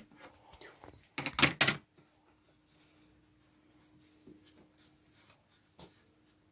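A brief clatter of knocks a little over a second in, then faint light taps and a small click near the end, from a plastic watercolour paint box and brush being handled on a table. A faint steady hum sits underneath.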